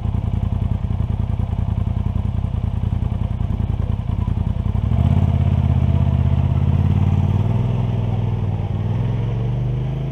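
ATV engine idling close by with a rapid, even pulse. About halfway through, a second, deeper engine note comes in louder and climbs slowly in pitch as a side-by-side UTV pulls away.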